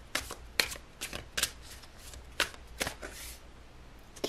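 A deck of tarot cards being shuffled by hand: a run of short, irregular card slaps and rustles, about eight in four seconds.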